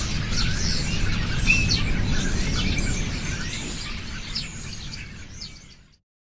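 Birds chirping, many short calls over a steady background hiss, fading out gradually toward the end.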